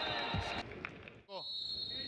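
A lull in the football commentary: low background noise with a short fragment of a man's voice about two-thirds through.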